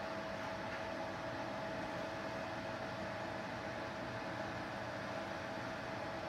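Steady hiss with a thin constant whine in it, no handling sounds or knocks.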